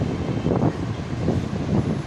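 A steady low rumble of background noise picked up by the microphone in a short pause between a man's sentences.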